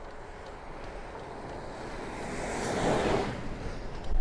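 An oncoming lorry passing close by a moving bicycle: a rush of tyre and engine noise that swells to its loudest about three seconds in and quickly falls away, over steady wind noise on the microphone.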